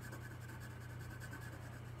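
Pencil shading on drawing paper: soft, light scratching of graphite strokes, over a low steady hum.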